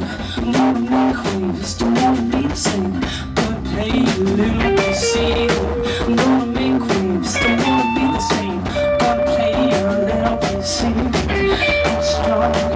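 Live indie rock band playing: electric guitars, bass and drum kit, with steady drum hits and a few long held guitar notes.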